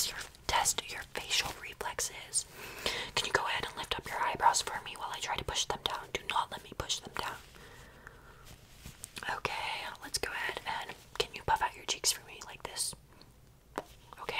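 Close-up soft whispering, with brief quieter pauses about eight and thirteen seconds in.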